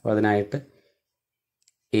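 A man's voice speaking for about half a second, then a pause with one faint computer mouse click, and speech starting again at the very end.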